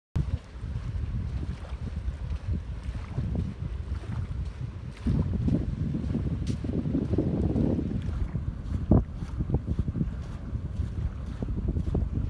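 Wind buffeting the microphone in uneven gusts, a low rumble that grows stronger about five seconds in. A single sharp knock just before the end stands out as the loudest sound.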